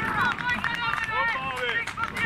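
Several men's voices shouting and calling out over one another in celebration just after a goal from a penalty kick.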